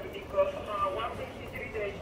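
Faint, muffled voice chatter from a radio, in broken snatches of speech.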